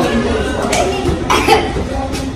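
A person's voice giving short breathy bursts, about twice, amid talk.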